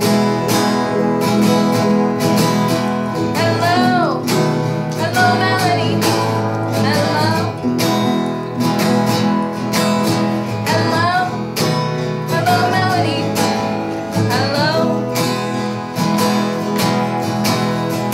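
An acoustic guitar strummed in steady chords while a woman sings along, her voice sliding between notes.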